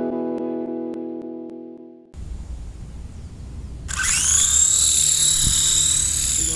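A music chord rings out and fades away over the first two seconds. After that comes a low rumble, and about four seconds in the electric rotor motors of a small red toy RC camera helicopter whine up to speed for lift-off: a high whine that rises quickly and then holds steady.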